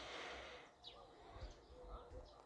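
Faint bird calls: a few short high chirps about a second in, and a low steady note near the end.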